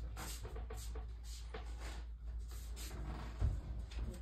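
Light kitchen handling noises: scattered faint clicks and knocks, with one louder knock about three and a half seconds in, over a low steady hum.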